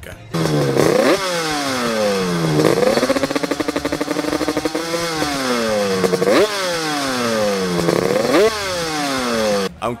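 Yamaha RD350LC liquid-cooled two-stroke parallel twin being revved repeatedly: the pitch climbs quickly with each throttle blip and sinks slowly back, holding steadier for a couple of seconds in the middle.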